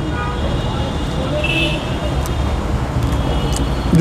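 Motor traffic passing close by: a steady low engine rumble that swells slightly, with a short high tone about one and a half seconds in.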